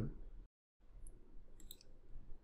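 Faint computer mouse clicks: a single tick about a second in, then a quick cluster of clicks near the end as the font colour drop-down is opened.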